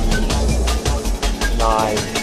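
Drum and bass music: a fast, regular beat of sharp drum hits over heavy bass, with a short pitched phrase near the end.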